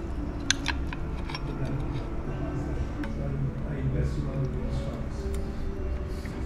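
Soft background music over low room murmur, with a few light clinks of a metal fork against a plate about half a second in.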